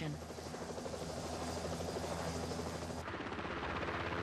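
Helicopter in flight: the engine and rotor run steadily with a fast, even beat. About three seconds in, the sound turns brighter and hissier.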